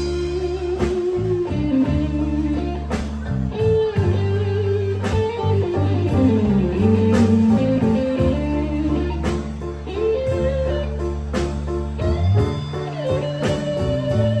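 Live band playing a blues-style instrumental passage: electric guitar carries the lead with bending notes over bass, drums and keyboard.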